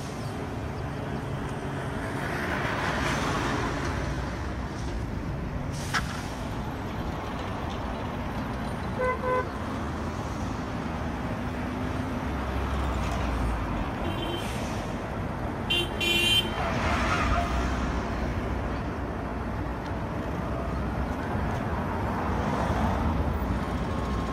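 Road traffic: cars and minibuses pass one after another, their engine and tyre noise swelling and fading. Short double horn toots sound about nine seconds in and again around sixteen seconds.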